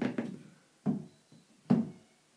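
Heavy-gauge metal doorway pull-up bar knocking against the door frame as it is seated and handled: three short clunks, near the start, about a second in and near the end.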